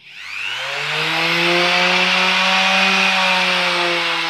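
Bosch GEX 125 random orbit sander (290 W) switched on and running free in the air without sanding. Its motor whine rises in pitch over about the first second as it spins up, then runs steadily at its lowest speed setting.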